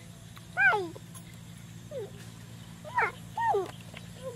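Short animal calls, each rising and then falling in pitch, four in all with the last two close together near the end. A steady low hum runs underneath.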